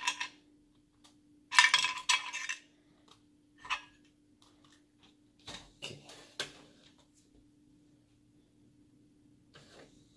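Small metal parts clinking and rattling in a plastic case, a burst at the very start and a louder one about a second and a half in, then a few light clicks up to about six and a half seconds, as a precision screwdriver bit or screw is picked out for a laptop repair.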